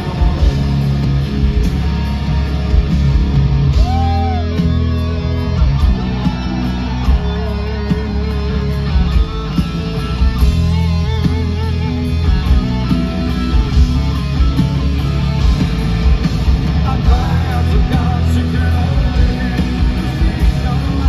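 Live rock band playing electric guitar, bass and drums, with a lead guitar line of bent, wavering notes, heard from within the crowd.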